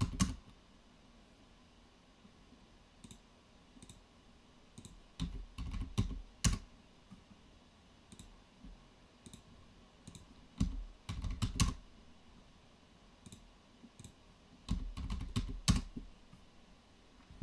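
Computer keyboard keystrokes and mouse clicks: scattered single clicks, with three short bursts of typing about five seconds apart.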